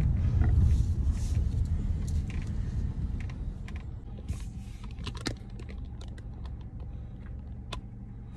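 Low rumble inside a car that dies away over the first few seconds, followed by scattered light clicks and taps.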